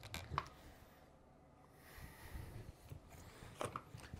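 Faint plastic clicks and scraping of a Milwaukee M12 battery pack being worked loose and pulled out of the top of a laser level, with small clicks near the start and near the end.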